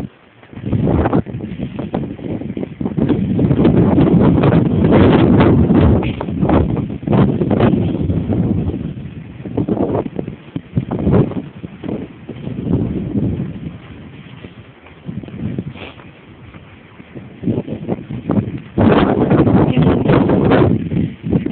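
Wind buffeting the camera's microphone in gusts: loud for most of the first half, easing off, then rising again near the end. Footsteps on dry ground come through underneath.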